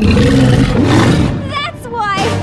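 A cartoon character's loud, deep roar that starts suddenly and lasts about a second, followed near the end by short, high, squeaky cries.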